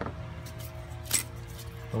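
A sharp metallic clink about a second in, with a few lighter ticks, as small metal hardware is handled around the turbo oil line's banjo fitting, over a steady hum.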